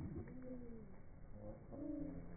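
Australian magpies calling while they feed, the sound slowed down with the slow-motion picture, so their calls come out as low, drawn-out gliding moans. One call arches down early on and another rises near the end.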